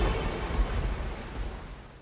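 The closing fade of a pop track: a hissing wash of noise over a low rumble, with the singing and melody gone, dying away steadily to silence at the end.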